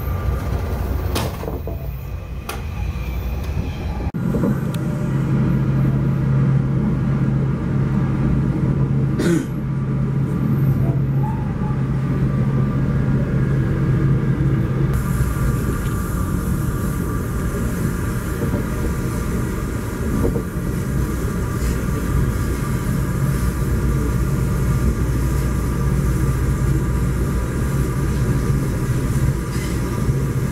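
Steady low rumble of a Metrolink commuter train heard from inside a moving coach, with a few sharp clicks in the first ten seconds. A passing train alongside fills the first few seconds, the sound changes suddenly about four seconds in, and a steady low hum runs from then until about fifteen seconds in.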